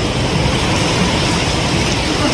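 Steady rushing background noise, even in level, with no distinct events.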